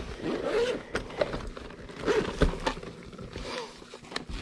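Zipper on a black fabric TDK cassette carrying case being pulled open in a few short, scratchy pulls, with light handling noise from the case.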